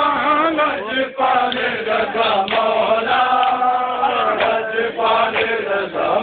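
A group of men chanting a noha, a Shia mourning chant, in unison, over a steady beat about twice a second.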